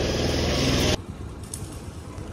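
A loud rushing noise for about a second, cut off abruptly. It is followed by the quieter, steady low rumble of a motor scooter being ridden, with wind noise.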